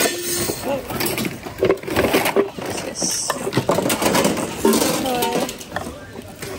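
Mixed household items (plastic, metal, cloth) clattering and rustling as a gloved hand rummages through a bin of goods, with short knocks and clinks throughout. Voices murmur in the background, briefly clearer near the end.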